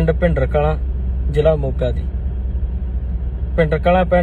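Steady low rumble of a car heard from inside the cabin, under a man's intermittent speech.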